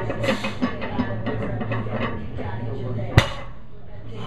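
A loaded barbell with 45 lb iron plates, 315 lb in all, is set down on the gym floor after a deadlift, landing with one sharp impact about three seconds in. A few light metallic clinks come from the plates near the start.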